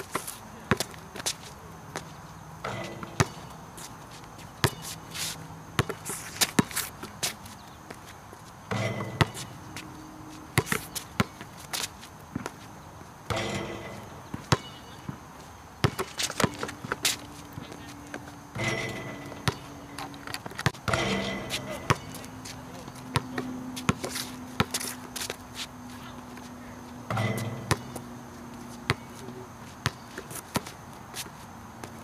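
A basketball bouncing on an outdoor hard court during shooting practice: irregular sharp thuds from dribbles, passes and rebounds, spread through the whole stretch.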